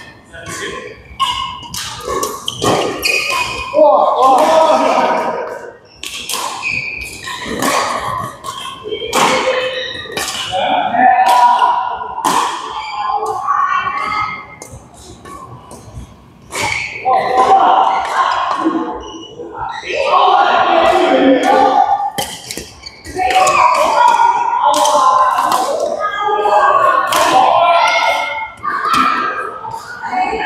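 People talking, mixed with short sharp knocks of badminton rackets striking a shuttlecock and the thud of players' shoes on the court floor.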